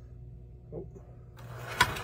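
1935 Mi-Loco K5 O-scale model steam locomotive with an open-frame motor, running with a steady hum. About a second and a half in, a burst of rattling noise ends in a loud sharp clack as it runs off the track: the improvised outside third rail is set at the wrong height.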